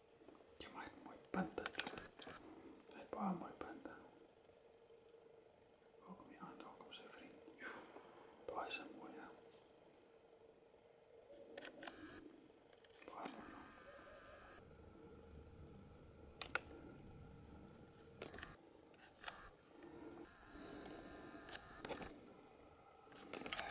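Faint, hushed whispering that comes and goes, with a few sharp clicks.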